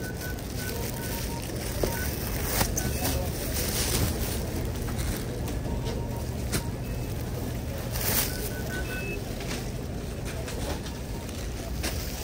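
Plastic produce bags crinkling against the microphone in several sharp bursts, over a steady low hum of store ambience with background voices. A few short high tones sound in small groups now and then.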